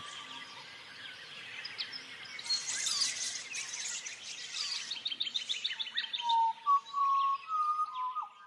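Birdsong: scattered high chirps, a fast trill about five seconds in, then clear, steady whistled notes that step up in pitch near the end.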